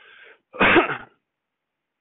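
A man clears his throat once: a faint intake of breath, then a single loud, harsh, cough-like burst lasting about half a second.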